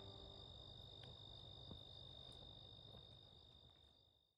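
Faint, steady high-pitched trill of crickets, fading away near the end.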